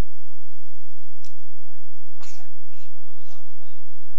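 A person's voice near the microphone: faint talk, with a few short breathy bursts, the strongest about two seconds in, like a cough.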